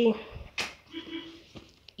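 Handling noise: a brief sharp rustle of clothing moved against the phone about half a second in, followed by a few faint small clicks.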